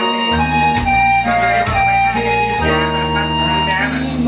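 Instrumental backing music with a steady beat and a melody of held notes, as in a karaoke backing track.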